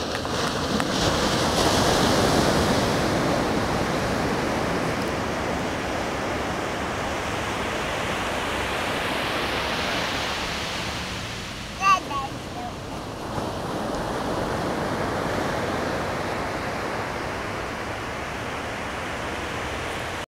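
Ocean surf washing onto a beach, a steady rushing that swells and eases as waves break, with one brief high-pitched call about twelve seconds in.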